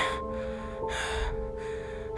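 Background music with steady held notes, under a person's heavy breathing: three breathy gasps about two-thirds of a second apart.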